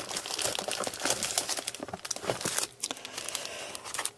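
Clear cellophane card bags crinkling and crackling as handmade greeting cards inside them are lifted and shuffled, a busy irregular rustle.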